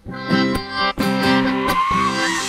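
Karaoke instrumental backing track made by vocal reduction: plucked guitar over chordal accompaniment, the notes broken by short rhythmic stops. A faint remnant of the removed lead vocal follows the lyric line.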